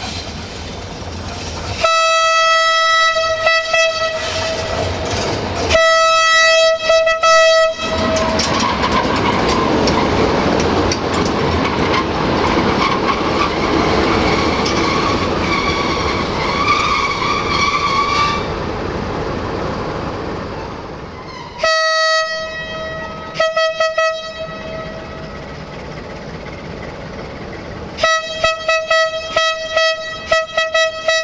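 Diesel locomotive horn, two long single-note blasts as a Romanian LDE2100 (060-DA) Sulzer diesel-electric approaches, then the loud rush of its engine and wheels as it runs past for about ten seconds. Later come more horn blasts, first a broken group and then a quick series of short toots near the end, as a second locomotive comes in.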